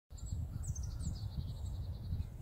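Birds singing outdoors: a couple of quick high downward chirps, then a fast run of repeated high notes, over a steady low rumble.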